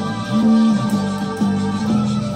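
Four-string electric bass playing a riff of held low notes along with a rock track with drums; a louder, longer note comes about half a second in.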